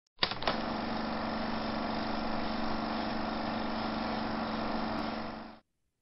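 A steady mechanical drone with a constant low hum underneath, starting with a click just after the beginning and fading out shortly before the end.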